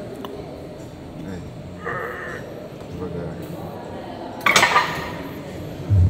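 Gym weights clanking: a loud metallic clank about four and a half seconds in, then a low thud near the end, over background gym noise.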